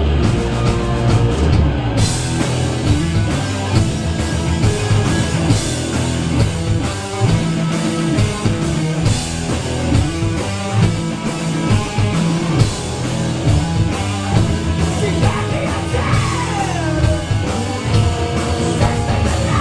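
Stoner rock band playing live in a small club: distorted electric guitars, bass and drum kit, loud and dense. The cymbals come in about two seconds in, and a pitch slide falls near the end.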